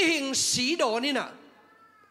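A man preaching through a handheld microphone: one short spoken phrase with strongly rising and falling pitch, ending about two-thirds of the way through.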